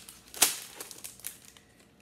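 Plastic wrapping crinkling and small LEGO pieces clicking as they are handled and sorted, with one sharp click about half a second in and a few fainter ones after.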